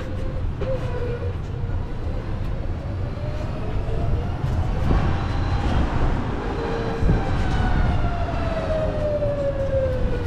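Tuk-tuk's motor whining as it drives through city streets, its pitch rising about halfway through and then falling slowly toward the end, over a steady low rumble of the ride.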